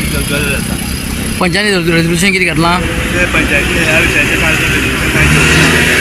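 Road traffic: vehicle engines running close by, a steady low rumble, with people's voices about a second and a half in.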